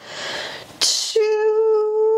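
A woman's breathy exhale, then a short sharp hiss of breath, followed by a long vowel held on one steady pitch: a drawn-out count of "two" spoken while straining through an ab curl.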